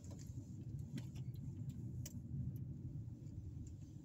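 Car being driven, heard from inside the cabin: a steady low rumble of engine and road noise, with a few faint clicks.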